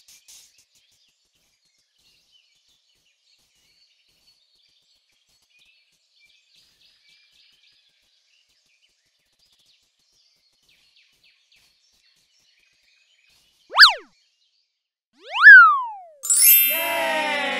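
Faint scraping of a small spatula smoothing wet cement, then near the end two loud cartoon 'boing' sound effects about a second and a half apart, each a quick whistle-like swoop up and back down in pitch.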